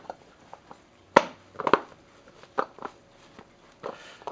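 Handling noise from a spin mop's plastic head and microfiber pad: one sharp plastic click about a second in, then a quick pair of clicks and a few softer knocks and rustles.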